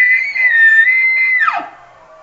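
Bull elk bugling: a loud, high whistled note held with a slight waver, then breaking sharply down in pitch about one and a half seconds in, into a short low grunt.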